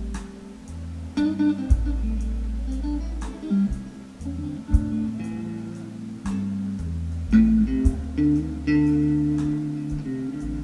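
Live blues band playing an instrumental passage: guitar over bass, keyboard and drums, with a slow beat of drum hits about every one and a half seconds.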